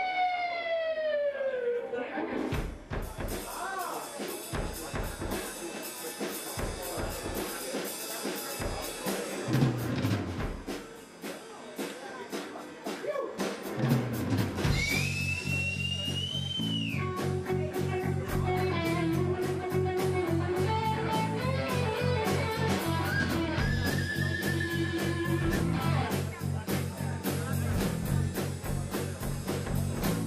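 Live rock band in an instrumental section. After a falling note, the drum kit carries it almost alone for about twelve seconds. Then bass guitar and electric guitar come back in with a steady driving rhythm, one guitar note bending up high shortly after.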